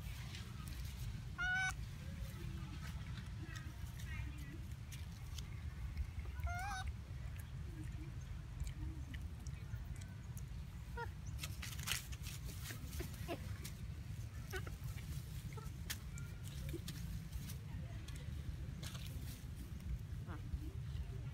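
Long-tailed macaque giving two short, wavering, high-pitched squealing calls, about one and a half and six and a half seconds in, over a steady low rumble, with a few light clicks near the middle.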